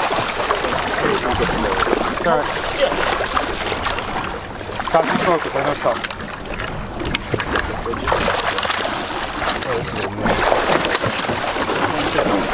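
Water splashing and churning as a hooked scalloped hammerhead shark thrashes against the side of the boat, with wind on the microphone and indistinct crew voices over it.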